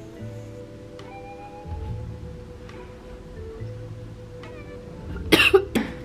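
Quiet background music with a low bass line, and near the end a person coughs twice, loudly.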